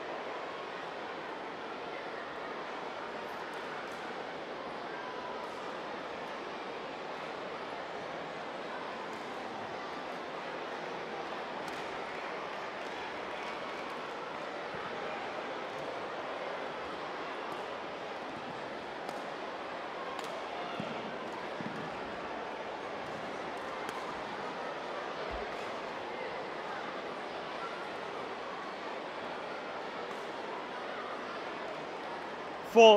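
Steady murmur of an indoor sports hall crowd, with scattered faint sharp clicks of badminton rackets striking the shuttlecock and shoes on the court during a rally.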